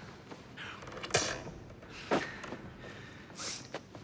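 A few sharp thuds of punches landing on a man tied to a chair, the loudest about a second in, with short breaths and grunts between them.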